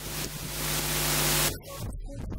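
A loud static-like hiss over a steady low hum, swelling for about a second and a half and then cutting off abruptly.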